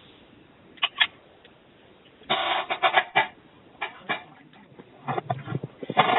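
Computer keyboard typing heard through a phone line: two clicks, then a dense run of keystrokes and a few scattered ones, as details are entered.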